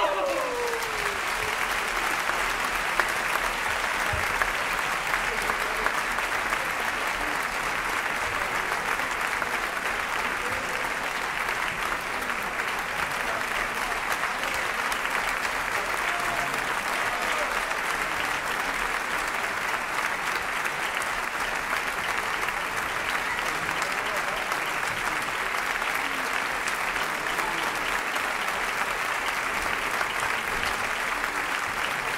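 Theatre audience applauding steadily at a curtain call, with an occasional shout from the house.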